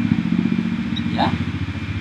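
A steady low engine drone runs throughout, with a fine rapid pulsing.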